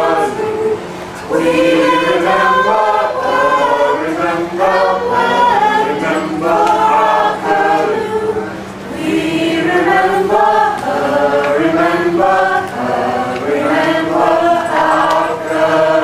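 A mixed choir of men's and women's voices singing a song together in harmony, phrase by phrase, with short breaths between phrases about a second in and about nine seconds in.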